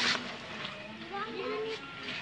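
Indistinct voices talking in the background over a faint steady hum, with one brief sharp knock right at the start.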